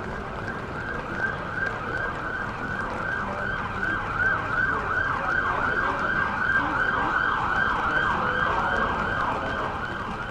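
Emergency vehicle siren sounding a fast up-and-down yelp, about three sweeps a second, growing louder a few seconds in as it draws nearer.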